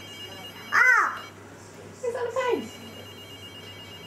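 A toddler's voice: two short high-pitched babbled calls, the first rising and falling about a second in, the second sliding down in pitch around two seconds in.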